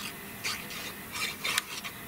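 Plastic nozzle of a squeeze bottle of liquid craft glue scraping across the back of a die-cut paper piece as glue is spread, in a few short strokes.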